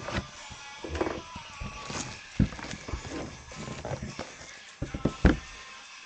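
Cardboard boxes of trading cards being handled and moved on a table: irregular knocks, taps and scrapes, with the loudest thump about five seconds in.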